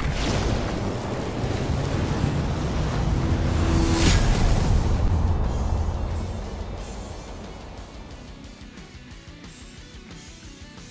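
Cinematic logo-intro sting: music over a heavy low rumble, with a sharp hit about four seconds in, then fading out over the last few seconds.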